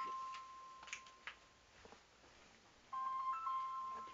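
A steady electronic tone held for about two seconds, ending about a second in and sounding again near the end, with a few short clicks in between.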